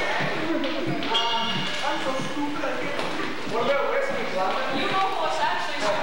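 Indistinct talking in a large room, with several voices and no single voice standing out.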